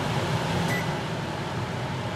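Range-hood vent fan above the stove running with a steady whir.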